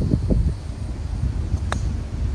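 A golf club striking a ball on a short chip shot: one sharp click near the end, over steady wind noise on the microphone.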